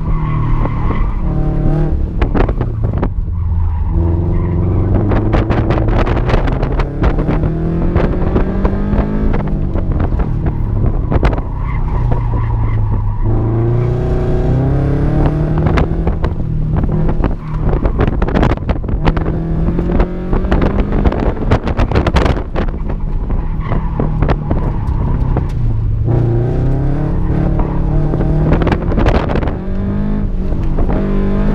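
2016 Scion FR-S's 2.0-litre flat-four engine, fitted with Tomei unequal-length headers and a Manzo cat-back exhaust, revving up and falling back over and over as the car accelerates and slows between cones. It is heard from inside the cabin, with tires squealing through the turns.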